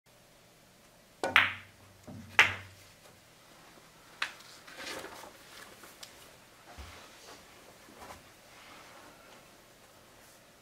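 Pool shot on a billiard table: the cue striking the cue ball and a sharp clack of ball on ball, then a second loud clack about a second later. Fainter knocks follow as the balls roll on and settle.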